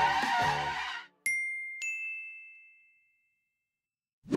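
Two bright chime dings about half a second apart, the second slightly higher in pitch, each ringing out and fading over a second or so. They are an edited-in sound effect marking on-screen highlights.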